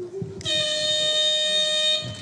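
Electronic buzzer of a weightlifting competition's referee signal, sounding one steady, loud, unwavering tone. It starts about half a second in and gives the 'down' signal: the lift is judged good and the lifter may lower the bar.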